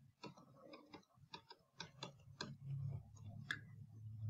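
Faint, irregular clicks and taps of a stylus on a tablet screen as a short expression is handwritten.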